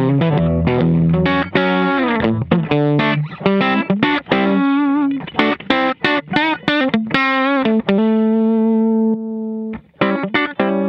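PRS SC245 electric guitar played through the Carl Martin Quattro's compressor into a clean Mesa amp that is pushed slightly into breakup. It plays a lick of quickly picked single notes with vibrato in the middle, then a note that sustains for a couple of seconds and cuts off just before the end.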